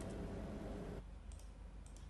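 Faint, scattered light clicks over a low background hum, in a pause between speech. The background noise drops about a second in.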